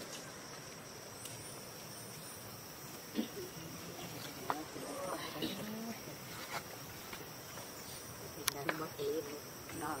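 A steady, high insect drone, with scattered short vocal calls and a few sharp clicks over it.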